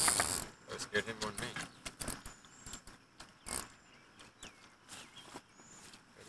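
Fishing reel being handled and cranked: scattered faint clicks and ratcheting from the reel's mechanism, after a short rush of noise right at the start.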